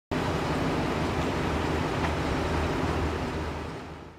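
Road and engine noise inside a moving vehicle's cabin: a steady low rumble with a hiss of road noise, fading out over the last second.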